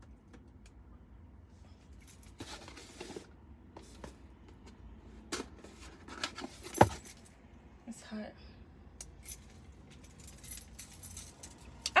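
Keys jangling and clinking on a key ring as a small keychain knife is worked off it, with scattered small clicks and one sharp click about two-thirds of the way through.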